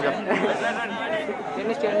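Crowd of spectators chattering, many voices talking over one another.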